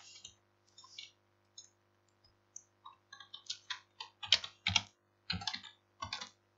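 Typing on a computer keyboard. The keystrokes are sparse at first, then come in a quicker run over the last two or three seconds as a formula is keyed in.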